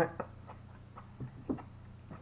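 A few faint, short clicks, two of them about a second and a half in: small mouth and hand noises while eating.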